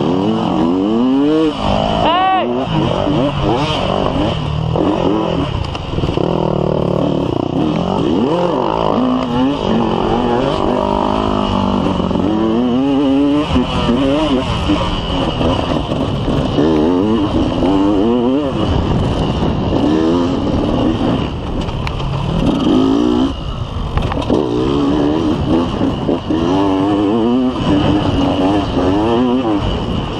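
Off-road motorcycle engine heard close up from on the bike, revving up and down without pause as the rider accelerates and backs off over rough ground.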